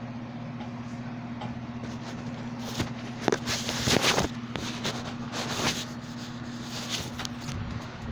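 Rustling and bumping of a phone being handled close to its microphone, loudest about three to four seconds in, over a steady low hum.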